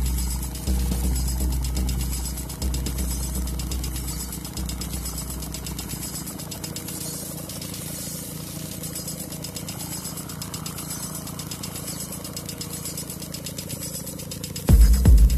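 Electronic dance music played from DJ decks, in a quieter stretch. Deep bass notes sound about every two seconds under fast, steady ticking percussion. About halfway through the bass drops out, leaving the ticking and a faint sweeping sound.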